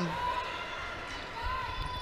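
Basketball being dribbled on a hardwood court over the steady background noise of an arena.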